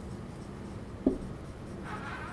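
Marker pen writing on a whiteboard: faint strokes, with a short click about a second in.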